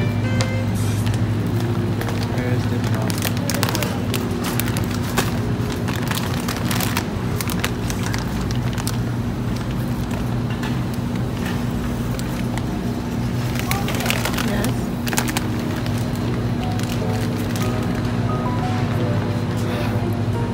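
Grocery store ambience: a steady low hum with indistinct voices and background music, and scattered clicks and rattles.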